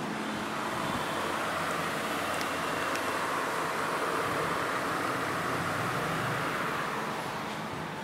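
Steady rushing noise like road traffic, swelling gently in the middle and easing off near the end, as of a vehicle going past.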